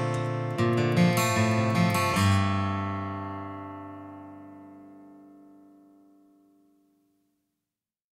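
The song's closing bars: a few quick strummed guitar chords, then a final chord left ringing and slowly dying away to nothing by about seven seconds in.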